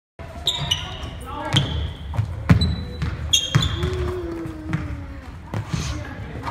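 Basketballs bouncing on a hardwood gym floor, several sharp thuds at irregular intervals, echoing in the large hall.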